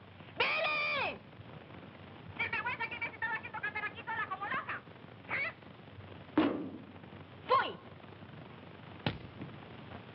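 A woman's voice on a telephone: a long rising-and-falling cry, then a burst of rapid, wordless exclamations and a few more short cries. A sharp knock about six and a half seconds in, from the receiver being banged down, and a single click near the end.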